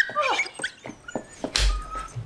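A dog whimpering in short, high whines that slide in pitch, with a dull thump about one and a half seconds in.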